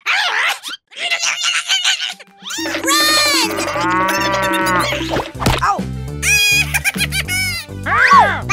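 Short cartoon sound effects with quick pitch swoops and clicks. About two and a half seconds in, children's background music starts with a steady bass beat, and a cow moo sound effect plays over it.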